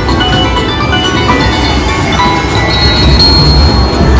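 Three-reel slot machine spinning its reels to electronic spin music and beeps, with a held high chime over the last second and a half as the reels settle on a small $5 win.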